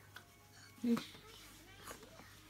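Quiet room with one brief vocal sound a little before a second in, between stretches of talking.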